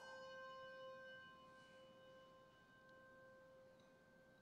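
A bell struck once, its clear pitched tone ringing on and slowly fading; faint.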